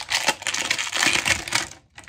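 Clear plastic packaging crinkling and rustling in the hands, with a quick run of small crackles and clicks, fading out near the end.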